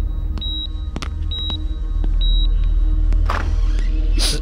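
Dramatic background score with a deep low drone. Three short high electronic beeps about a second apart, like a hospital patient monitor, stop after about two and a half seconds. A whooshing swell comes near the end.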